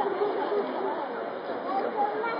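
Chatter of a crowd of onlookers, many voices talking over one another.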